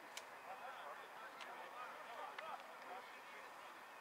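Faint, distant voices of players and onlookers calling across an open football pitch, with three short sharp clicks in the first two and a half seconds.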